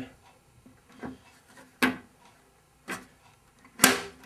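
Clear plastic air-deflector shield being fitted into a Power Mac G5's case. About four short plastic clicks and knocks come roughly a second apart, the loudest near the end as it seats.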